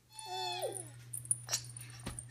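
A baby's short, high-pitched squeal that wavers and falls in pitch, followed about a second later by a couple of sharp clicks, over a steady low hum.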